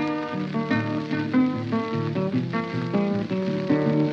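Blues guitar playing the instrumental opening of a song, a steady run of picked notes with no singing yet.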